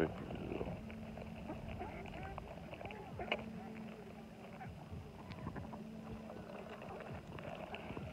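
A flock of mallards giving soft, faint calls: many short low quacks and chatters scattered through, with a small click about three seconds in.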